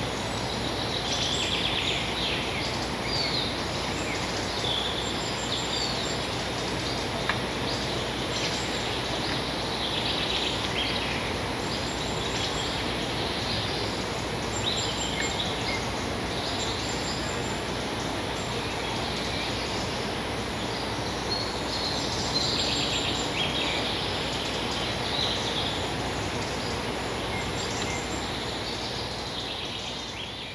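Woodland ambience: small songbirds chirping and singing on and off over a steady background hiss.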